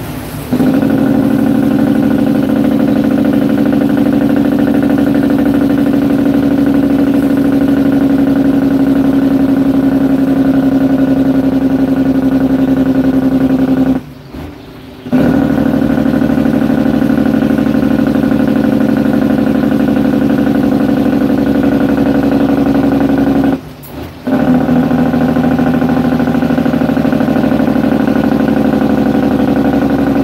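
Semi truck's diesel engine heard from inside the cab, a loud steady drone as it pulls in gear. The drone drops away for about a second twice, near the middle and again later, as the manual gearbox is shifted.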